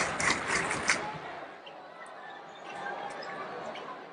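Sound of a basketball game in a large hall: crowd noise, louder for the first second and then dropping back, with scattered short knocks of a ball being dribbled on the hardwood.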